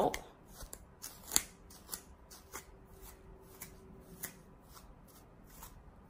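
Wide-tooth comb picking through a curly ponytail hairpiece: soft, irregular scratchy strokes, with a sharper click a little over a second in.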